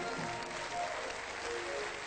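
Audience applause over instrumental music with slow, held notes.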